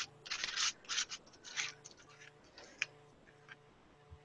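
Metal palette knife scraping paste across a stencil laid on paper: a run of short, quiet scrapes, a few a second.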